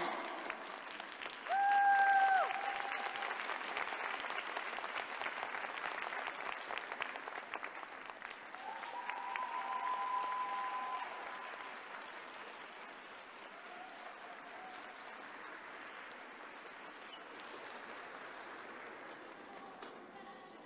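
Arena audience applauding a finished skating performance. The clapping is dense early and thins out after about twelve seconds. A loud, long, held tone rises over it about a second and a half in, and a softer one comes around nine seconds.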